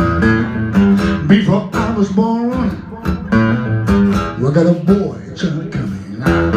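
Solo acoustic guitar playing a blues passage without vocals: a repeating low bass figure under plucked treble notes, some of them bent in pitch.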